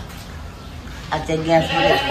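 A single drawn-out vocal call about a second in, held at a fairly steady pitch for under a second.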